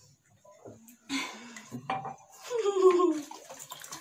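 Water splashing and pouring into a drinking glass about a second in, followed by a woman's voice sliding down in pitch, caught up in laughter.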